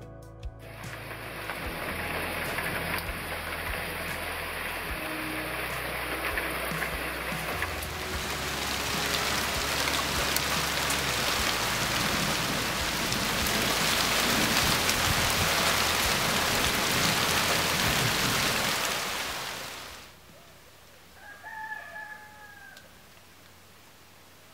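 Steady rain falling on foliage and a ceramic mug, building up and getting heavier partway through, then cutting off suddenly. Near the end a single brief animal call is heard.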